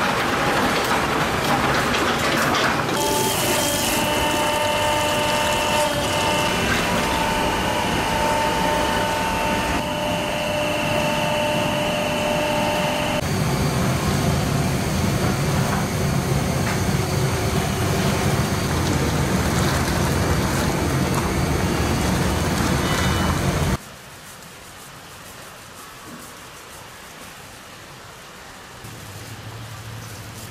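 Grape-crushing machine running loudly with a steady whine, then a low steady rumble from a large steel cauldron of grape must boiling. The noise cuts off suddenly about three-quarters of the way through, leaving a much quieter hum.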